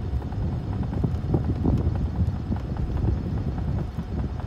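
Wind buffeting the microphone as a rough, uneven low rumble, with scattered light knocks over it.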